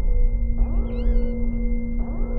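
Trailer sound design: a low rumble and steady held tones with rising sweeps that repeat every second or so. About a second in comes a short, high, squeaky call from an animated otter.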